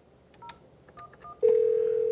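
Avaya J139 desk phone's speakerphone: a few short, faint keypad beeps as an extension is dialed, then about a second and a half in a steady ringback tone begins as the transferred call starts ringing.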